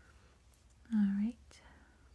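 A woman's brief wordless voiced sound, a short hum about a second in lasting under half a second.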